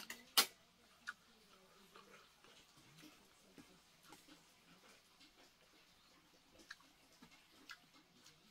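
Metal spoon clinking against a stainless-steel bowl as food is scooped: a few sharp clinks, the loudest about half a second in, then sparse lighter ones near the end.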